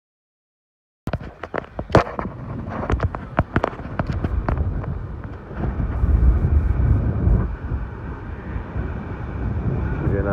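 Storm wind buffeting the microphone over rough, churning water around the boats. It starts about a second in with a run of sharp slaps and knocks, then settles into a steady low rumble.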